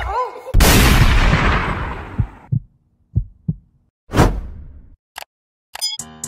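Edited-in sound effects rather than live sound. About half a second in there is a sudden loud boom-like hit whose noisy tail fades away over about two seconds. Then come two short low thumps, a second shorter hit about four seconds in, and a few clicks, with dead silence between them.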